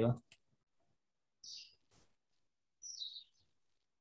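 Two short, high chirps like a small bird's call, about a second and a half apart, the second falling in pitch, with a single sharp click between them.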